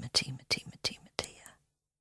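A voice whispering a quick run of short, breathy syllables that the recogniser could not make into words, stopping about one and a half seconds in.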